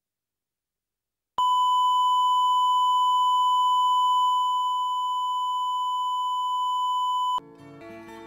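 Videotape line-up test tone played with colour bars: a single steady beep that starts about a second and a half in, holds for about six seconds and cuts off abruptly. Plucked-string music starts just after it.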